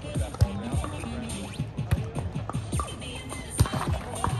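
Background music: an electronic track with a steady beat of sharp hits and deep, falling bass sweeps.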